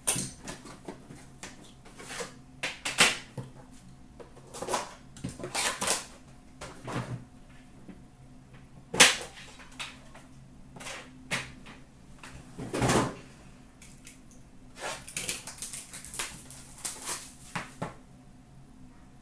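A cardboard hockey-card box being handled and slid open, then the metal tin inside opened and handled. Scattered clicks, knocks and short rustles, with a sharp click about halfway through.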